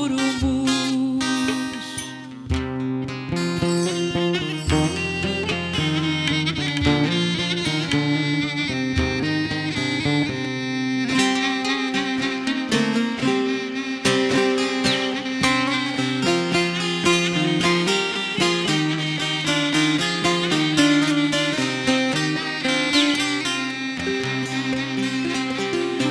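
Instrumental interlude of a Turkish folk song (türkü) played on bağlama, the long-necked Turkish saz: quick, dense plucked notes over a steady low ringing tone, with no singing.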